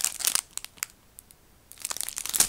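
Clear plastic bag crinkling as a squishy toy in its packaging is handled, in a short spell at the start and again near the end, with a quieter stretch between.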